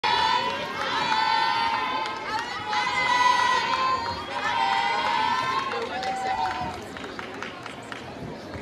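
Crowd in a sports hall cheering, with several high-pitched voices shouting long, drawn-out calls over the background noise. The calls are loudest through the first six seconds and die down near the end.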